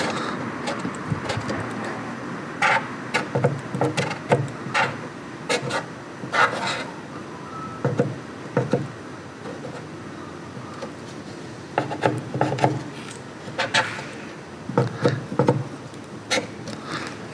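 Paint marker tip scratching and rubbing on weathered wood in short, irregular strokes as letters are written, over a steady low background hum.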